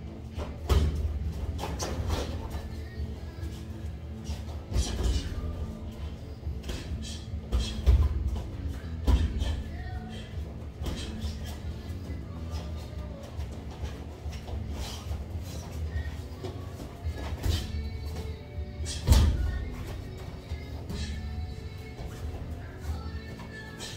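Background music with a steady bass line, over irregular sharp thuds and slaps of gloved punches landing during boxing sparring. The loudest hits come about 8 and 19 seconds in.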